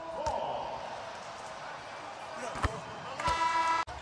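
A basketball bounces on the hardwood court over arena background noise. Near the end a short, steady arena horn sounds and cuts off abruptly.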